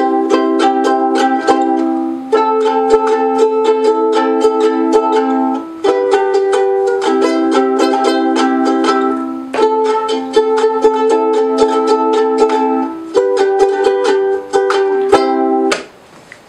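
Soprano ukulele strummed acoustically with the pickup unplugged: steady, quick strumming through a chord progression, with the chord changing every couple of seconds and the playing stopping near the end. It is freshly restrung, and the player warns it may be out of tune.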